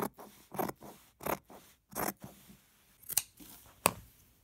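Scissors cutting through canvas along a marked line, one snip roughly every two-thirds of a second, then a short pause before two sharper snips near the end.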